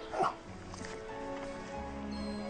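A golden retriever gives a short whine just after the start, falling in pitch. It sits over a soft film score of long held notes.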